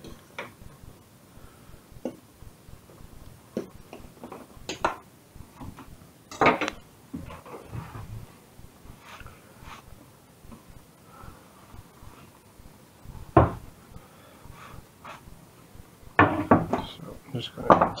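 Scattered clinks and knocks of a spoon, a stainless steel saucepan and a wooden chopping board being handled in a kitchen, with sharper clunks about six and thirteen seconds in and a busier run of clatter near the end.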